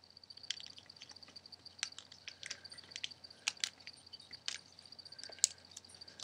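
Thin origami paper crinkling and crackling in short, irregular clicks as its flaps are handled and creased by hand.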